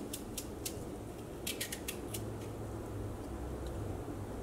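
Crisp clicks of a knife slicing through raw potato held in the hand. There are a few single cuts in the first second, then a quick run of several about a second and a half in, over a low steady hum.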